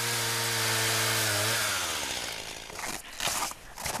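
Stihl chainsaw running at steady high revs as it cuts through a tree trunk, its note fading away about two seconds in. A few short, sharp sounds follow near the end.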